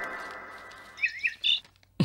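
A ringing note fades away over the first second, then birds give a few short chirps about halfway through.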